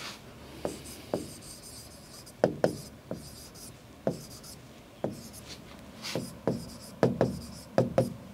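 Pen stylus tapping and sliding on the glass of an interactive display board while writing: irregular sharp taps with faint scratching between them, coming closer together near the end.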